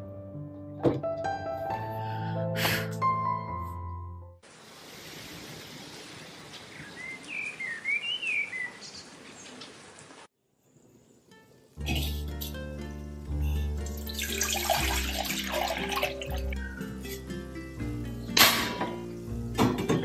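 Background music, then about six seconds of steady rain with a bird chirping a few times in the middle, then a brief hush before the music returns, with a short rush of noise and a sharp knock near the end.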